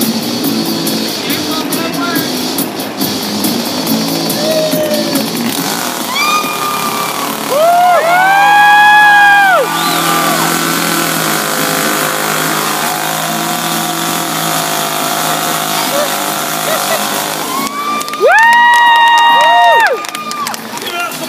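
Two-stroke gas chainsaw revved: a few short throttle blips about six seconds in, then two long full-throttle revs of about two seconds each, near eight seconds and near the end, each rising sharply in pitch, holding and then dropping off. Background music and crowd noise run underneath.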